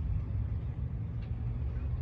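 Steady low rumble of motor traffic heard from inside a parked car's cabin.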